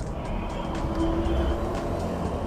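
Low rumble of street traffic with faint music playing; one note is held for about a second in the middle.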